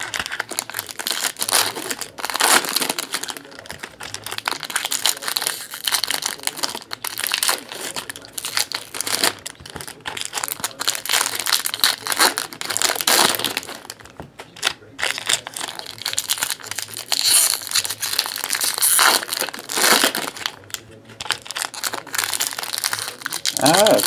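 Foil wrappers of trading card packs crinkling as they are handled and opened, a continuous run of irregular rustles and crackles.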